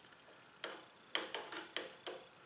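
A hand screwdriver turning a small screw into the end of a wooden vise handle, giving about five sharp, faint clicks at uneven intervals in the second half.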